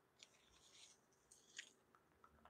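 Near silence, with faint scratchy handling noises and one small click about three-quarters of the way through.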